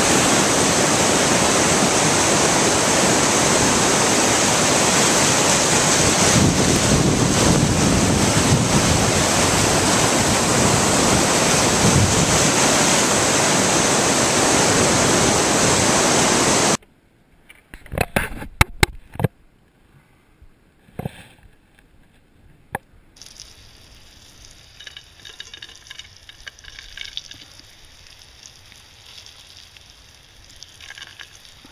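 River rapids rushing loudly and steadily over rocks, cutting off suddenly a little after halfway. A much quieter stretch follows with a few sharp knocks, then faint frying sizzle from a pan over campfire coals near the end.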